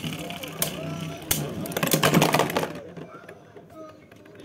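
Two Beyblade Burst spinning tops whirring and clashing in a plastic stadium, with sharp clicks as they strike each other. About two seconds in comes a loud clatter as one top bursts apart into its pieces, and the noise then drops away.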